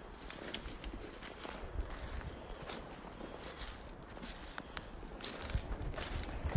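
Footsteps through dry fallen leaves on a forest floor, an irregular series of rustling steps, with low thumps near the end.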